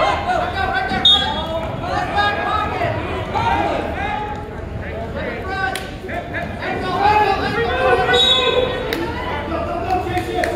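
Overlapping voices of spectators and team members talking and calling out in a large, echoing gymnasium, with two sharp knocks, one about six seconds in and one near the end.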